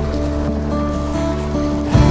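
Background music of long held notes, with the rush of river water beneath it.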